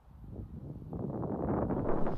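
Wind buffeting the microphone outdoors, a rough, unpitched rush that builds up from about a second in and grows louder toward the end.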